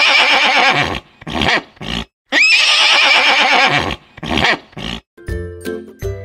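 Horse neighing twice, the same long whinny each time, rising at the start and then wavering. Each whinny is followed by two shorter sounds.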